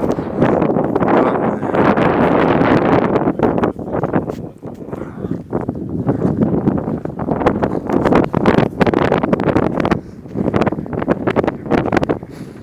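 Wind buffeting a phone's microphone in gusts. It eases briefly about four seconds in and again near ten seconds before picking up.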